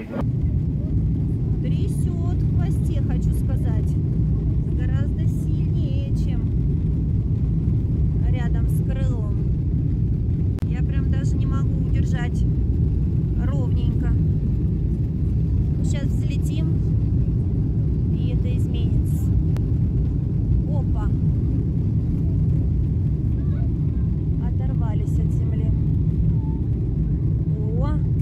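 Jet airliner on its takeoff roll and climb-out, heard from inside the cabin: the engines at takeoff thrust give a loud, steady low rumble that starts abruptly and holds throughout, with faint voices above it.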